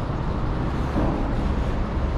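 Steady low rumbling background noise with no distinct event.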